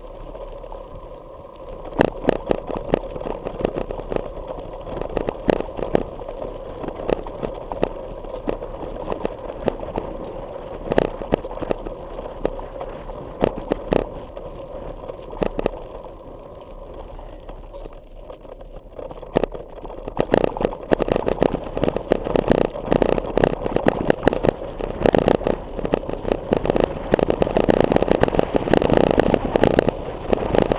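Rattling and clattering from something loose in a handlebar-mounted GoPro Hero3 housing as a mountain bike rides over rough ground, which the rider thinks is a loose part in the camera housing. Sharp knocks come in irregular clusters over a steady rumble, growing denser and louder from about twenty seconds in.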